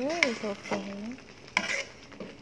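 A spoon stirring thick, sticky soursop jam in a black frying pan, scraping against the pan, with a short scrape about one and a half seconds in.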